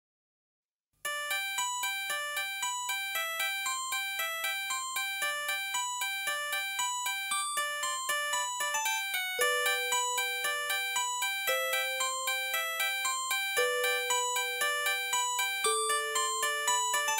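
Instrumental music that starts about a second in: a quick, repeating figure of short struck notes, about three a second, over a faint low hum. From about halfway through, a held melody note joins and changes pitch every couple of seconds.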